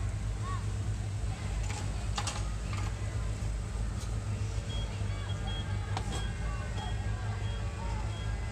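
Go-karts running on the track with a steady low hum, a few sharp clicks and faint background voices. About halfway through, a short high beep starts repeating about twice a second.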